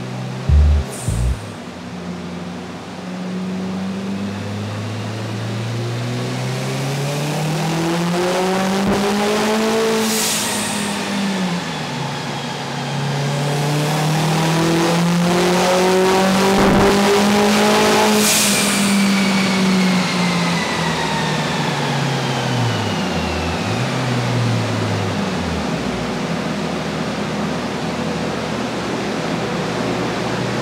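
Turbocharged two-litre Subaru GC8 boxer engine run on a chassis dynamometer. The revs climb twice to a high peak and fall back, with a burst of hiss at each peak, then drop away with a few brief dips near the end.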